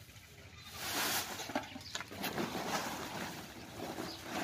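Granular fertilizer being scooped off a plastic tarp with a metal basin and poured into a woven sack: irregular rustling, scraping and pouring, starting about a second in after a quiet moment.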